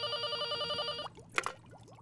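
An old-fashioned telephone bell ringing with a rapid trill, stopping about a second in; a short sharp click follows.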